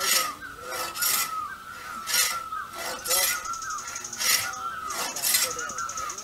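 Hand saw cutting through timber in rhythmic strokes, about one a second, some strokes coming in quick pairs.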